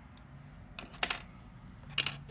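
A few light, sharp clicks and taps of small objects being handled: a couple close together about a second in and one near the end.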